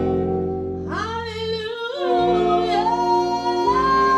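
Big band playing with a female jazz vocalist. The band sustains a low chord, and a woman's voice comes in about a second in, ending on a long held note.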